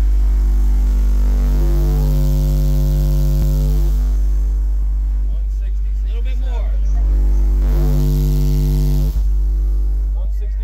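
Car-audio subwoofer system in a truck playing a very loud, steady deep bass tone for an SPL meter run, held without a break, with its overtones shifting a few times.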